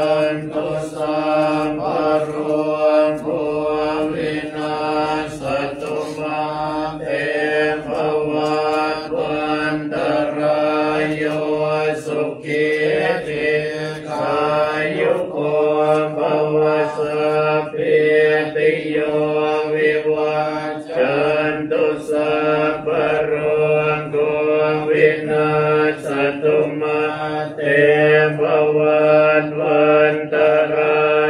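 Thai Buddhist monks chanting Pali verses in unison, a continuous recitation held on a nearly level pitch.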